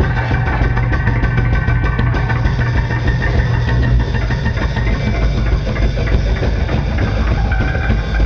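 Loud live band playing a steady distorted drone, a dense wall of amplified noise over a constant low hum, with no drum beat in it.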